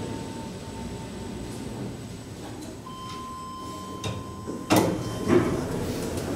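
Schindler 5400 traction elevator arriving: a steady electronic tone holds for about two seconds in the middle. Then, near the end, the automatic doors clunk and slide open.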